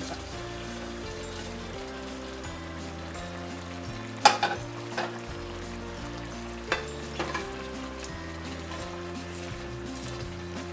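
Chicken masala sizzling in an open pressure-cooker pot on the stove, with a few sharp clicks around the middle as crushed fried onions are added. Soft background music with held notes plays throughout.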